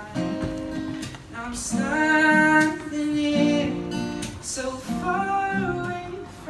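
A man singing while strumming an acoustic guitar, a live solo performance with the sung phrases rising over the chords.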